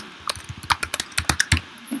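Computer keyboard being typed on: a quick run of about a dozen keystrokes lasting about a second and a half, then it stops.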